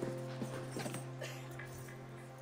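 A quiet, sustained chord holds steady under scattered knocks and shuffling from a crowd of people getting to their feet.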